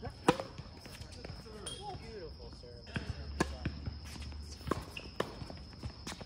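Tennis serve: a racket strikes the ball with a loud crack about a third of a second in. A rally of further racket hits and ball bounces on the hard court follows.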